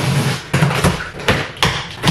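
A knife cutting through the tape and cardboard of a box, heard as a series of short scraping strokes.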